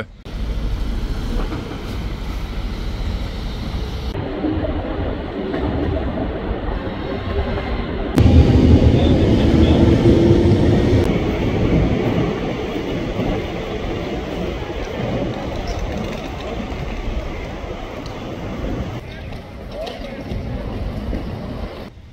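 Busy bus-station ambience: steady traffic noise and people's voices, with a heavier low rumble of a passing vehicle for about three seconds near the middle.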